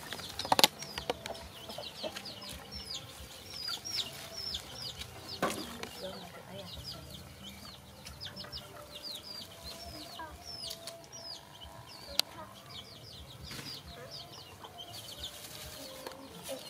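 Chickens calling: a steady run of short, high, falling peeps with lower clucking underneath. A few sharp knocks cut through, the loudest about half a second in.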